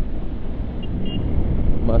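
Motorcycle being ridden at about 53 km/h: a steady low engine and road rumble with wind on the microphone.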